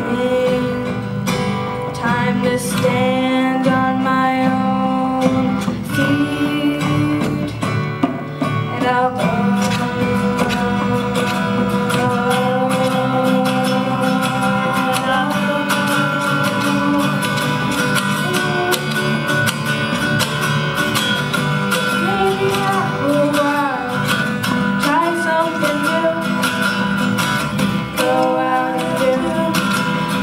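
Folk song performed live: two acoustic guitars strummed steadily under female voices singing together.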